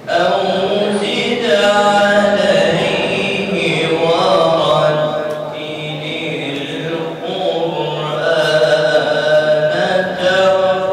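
A boy's solo voice chanting a melodic religious recitation through a microphone, holding long notes that glide slowly up and down in pitch.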